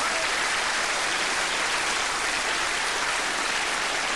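Large crowd applauding and cheering in a dense, steady din.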